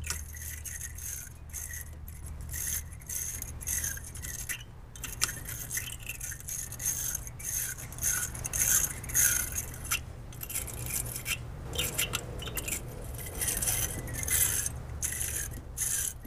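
Wire brush of a battery post and clamp cleaner scraping inside a car battery's positive terminal clamp in quick, irregular back-and-forth strokes, scrubbing corrosion off the clamp's inner surface. A steady low hum runs underneath.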